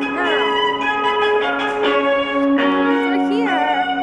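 A busker's instrumental music, several long held notes overlapping and ringing in a hard-walled concourse, with passers-by talking briefly.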